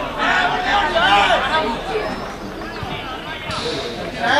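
Indistinct voices of people talking and calling out, loudest in the first second and a half.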